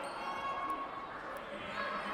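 Gym game ambience: a basketball being dribbled faintly on a hardwood court under a murmur of crowd and players' voices in a large hall.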